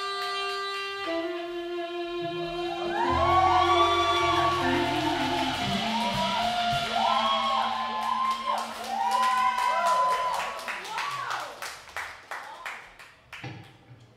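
Blues band playing live: held notes give way to a lead line of bending, swooping notes over a steady bass line, and the playing turns into short, choppy stabs and thins out near the end.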